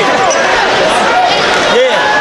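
Many voices shouting and cheering over one another in a gymnasium: a basketball team and its fans celebrating a win.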